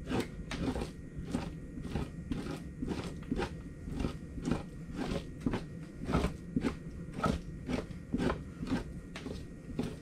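Two-handled fleshing knife, not very sharp, scraping fat and membrane off a beaver pelt stretched over a fleshing beam. It goes in short, regular strokes, about two a second.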